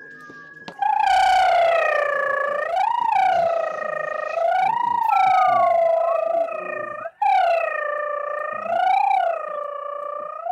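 A person's high, wavering voiced tone, held for several seconds as a drawn-out mouth sound. It swoops up in pitch a few times and breaks off briefly about seven seconds in. A fainter second gliding tone joins near the middle.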